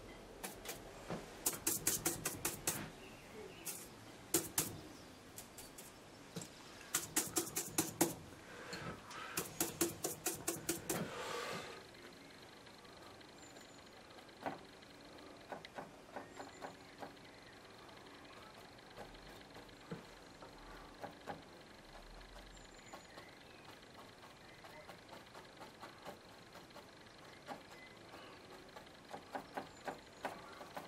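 A paintbrush dabbing oil paint in quick runs of light taps, in bursts over the first dozen seconds, then only occasional single taps. This is stippling small gaps of sky into the foliage of painted trees.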